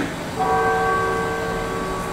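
A single bell-like chime about half a second in, its several steady tones dying away slowly over about two and a half seconds.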